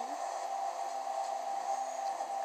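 A steady, even hum with a hiss under it, holding one pitch.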